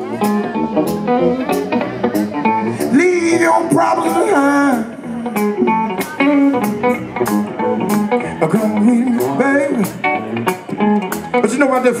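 Live blues band playing, electric guitar to the fore with notes that bend in pitch, over a steady drum beat.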